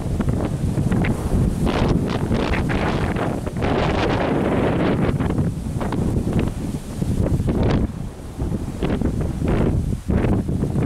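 Wind buffeting the microphone in a steady low rumble, with many brief rustles over it.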